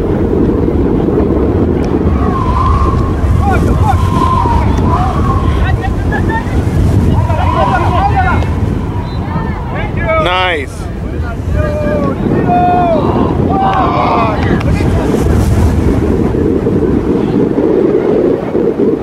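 Wind buffeting the microphone throughout, with people shouting on and around the pitch; one higher, sharper shout about ten seconds in.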